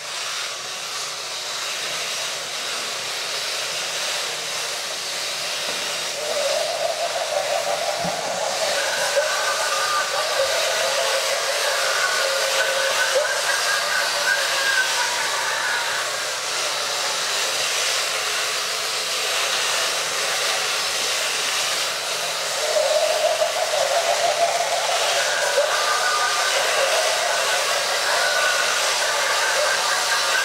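Several battery-driven walking robot toys running together: a steady whirring hiss from their small geared leg motors. A warbling tone joins in twice, for several seconds each time.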